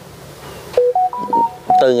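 Background music: a slow keyboard melody of single held notes that enters about a third of the way in, stepping up and then back down. A man's voice starts speaking just before the end.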